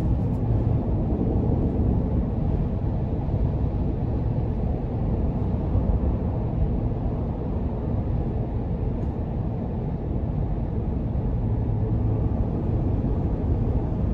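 Inside-cabin sound of a 2022 Chevrolet Tahoe RST cruising at highway speed: a steady low rumble of road and tyre noise with the 5.3-litre V8 running under it. Little wind noise.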